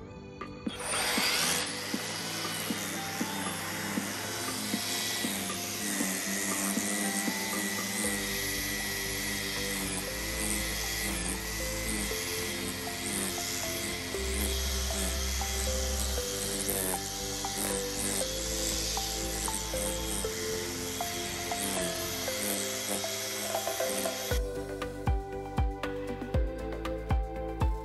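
An EGO cordless string trimmer with an Echo Speed-Feed 400 head whirrs steadily as its spinning line cuts grass. Background music with a bass line plays under it. The trimmer sound cuts off suddenly near the end, leaving only the music.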